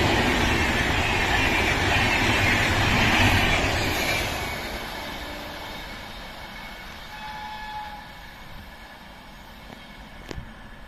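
Indian Railways express passenger coaches rolling past close by, their wheels rumbling and clattering on the rails. About four seconds in, the tail of the train goes by and the sound fades steadily as it moves away.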